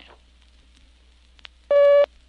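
Filmstrip advance beep: one steady electronic tone lasting about a third of a second near the end, the cue to move to the next frame. Before it there is only faint hiss and a small click.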